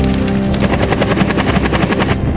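Bell UH-1 Huey-type helicopter's rotor beating in a fast, even rhythm over background music. The beat comes through more plainly about half a second in.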